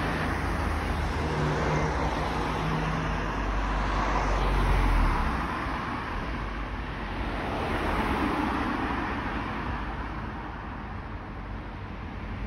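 Road traffic noise: a steady rush and low rumble of passing cars, swelling about five seconds in and again near eight seconds.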